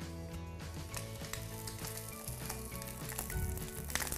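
Whole trussed chicken sizzling steadily in hot olive oil in a cast-iron cocotte as it is browned, with soft background music holding long notes underneath.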